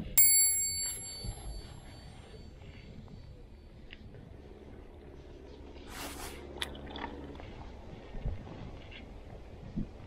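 A bell-like ring with a few clear overtones just after the start, fading away over about two seconds. Then faint handling noise, with a short rush of noise about six seconds in.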